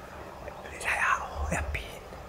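A man speaking in a breathy whisper, in two short phrases.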